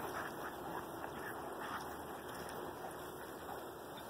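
Rottweilers play-fighting: faint, short growls and yips from the dogs over a steady background hiss.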